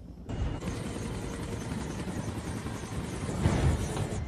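Helicopter rotor and engine noise that drops away briefly at the start, then returns steadily, with a louder swell about three and a half seconds in.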